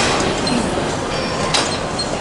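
Steady gym din from large ceiling fans and the room, with a sharp metallic clank at the start and another about a second and a half later as the leg-extension machine's weight stack is worked through reps.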